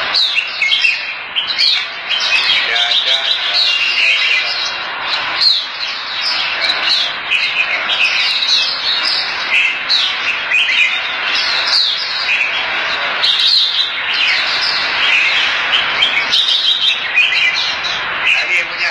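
Red-whiskered bulbuls (jambul) singing competition songs, many quick, overlapping chirps and warbled phrases from several caged birds at once, with no break.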